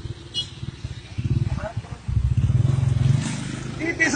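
A vehicle engine running close by, swelling from about a second in, loudest past the middle, then easing off near the end.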